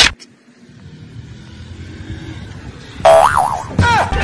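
A cartoon 'boing' sound effect with a wobbling pitch, about three seconds in, after a low rumble that slowly grows louder. Laughter breaks out at the very end.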